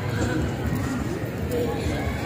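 A pause between chanted Qur'an verses: a steady low rumble and background noise of a large public-address venue, with faint voices under it.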